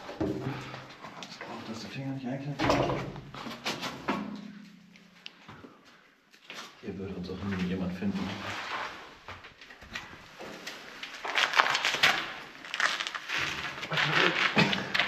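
Indistinct low voices mixed with scuffs and scrapes of a person climbing and crawling over rough concrete. A denser burst of scraping and rustling comes near the end.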